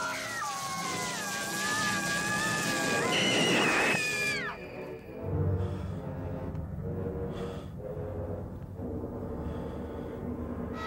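A long, high, wavering cat-like screech. It climbs in pitch about three seconds in and cuts off suddenly after four and a half seconds, giving way to low, dark sustained music.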